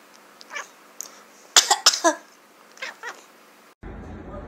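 A sleeping calico cat making about six short, falling meows in loose pairs, the loudest in the middle.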